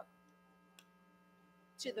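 Steady electrical mains hum picked up through the sound system during a pause in speech, with one faint click a little under a second in. A woman's voice resumes near the end.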